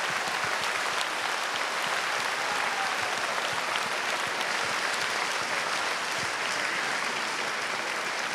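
Large audience in a concert hall applauding, a steady, dense clapping that holds at an even level throughout.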